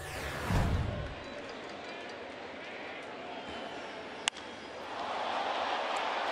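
A broadcast transition whoosh with a low thump in the first second, then a steady stadium crowd murmur. A single sharp crack comes about four seconds in, and the crowd grows louder near the end.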